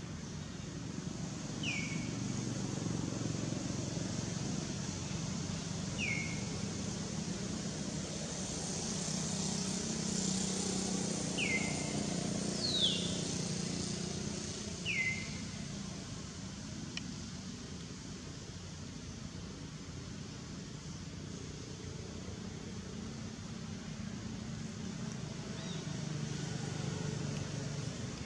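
Outdoor ambience with a steady low rumble, over which a bird gives a short, falling chirp every few seconds, about five times.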